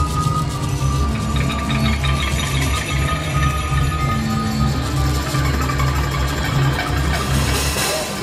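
Band music with a repeating, driving bass line under long held keyboard or synth tones.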